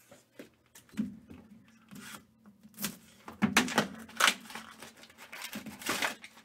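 Trading cards in rigid plastic holders and card boxes being handled on a table: irregular short clacks and brief rustles.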